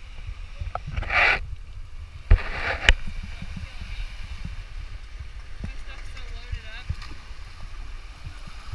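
Wind rumbling on the microphone of a handheld camera by the surf, with a brief rush of noise about a second in and two sharp knocks of camera handling a little after two and three seconds in. Faint voices are heard later.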